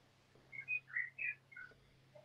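About six short, faint chirps of a small bird in quick succession, each at a slightly different pitch, some sliding up or down.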